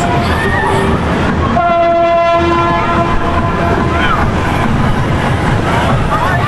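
A horn sounds one long steady blast starting about one and a half seconds in and fading after about two seconds, over the chatter and shouts of a crowd.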